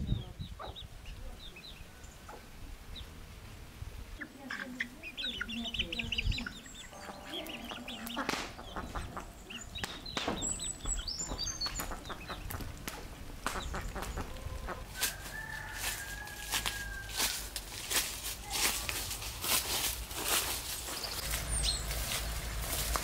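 Hens and young chickens clucking and calling, with short calls scattered throughout and one longer held call a little past halfway. A run of light taps and rustles follows near the end.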